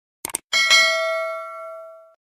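Notification-bell sound effect: a quick double mouse click, then a bright bell ding that rings and fades over about a second and a half.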